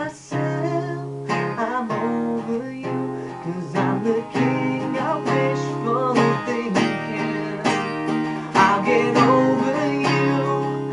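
Acoustic guitar strummed in a steady rhythm, with a man's voice singing over it in a few short phrases.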